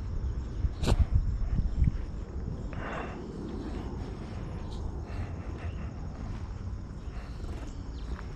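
Outdoor ambience of steady, high-pitched insect chirring, with a low rumble underneath and a sharp click about a second in.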